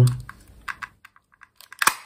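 Small clicks from a plastic craft punch being handled, then one sharp clack near the end as the punch is pressed and cuts a thumb-hole notch in the paper.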